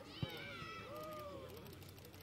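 Players' voices shouting and calling across the pitch, with a single sharp knock about a quarter second in.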